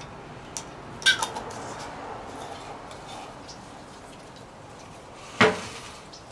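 Spoon knocking and scraping against a jam jar while jam is scooped and eaten, with a sharp knock about a second in and another near the end.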